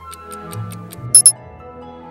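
Quiz countdown timer ticking fast and evenly, about seven ticks a second, over soft background music, then stopping about a second in with two short, loud, high-pitched dings that signal time is up.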